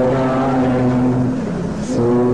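A man's voice chanting, holding one long, steady low note that breaks off shortly before the end before a new note begins.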